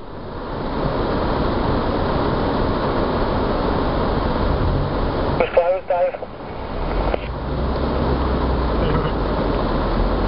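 Cab noise of a 4x4 driving slowly along a rough green lane: a steady rumble of engine and track noise that swells in over the first second, with a low engine drone setting in about seven seconds in.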